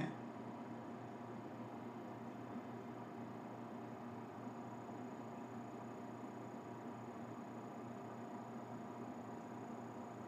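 Faint steady hiss with a low electrical hum: the room tone and noise floor of a microphone, with no other sound.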